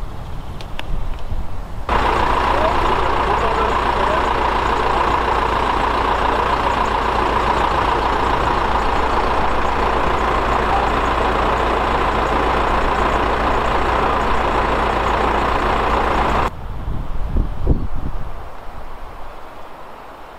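A steady engine running, with an even noisy drone and low hum, that starts abruptly about two seconds in and cuts off sharply near the end, followed by a few low knocks.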